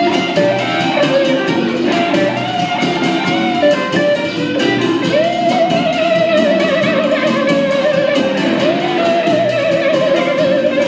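Live band playing electric-guitar-led blues rock, with guitars, bass and drums and a steady cymbal pulse. From about halfway through, a lead line holds long, wavering notes.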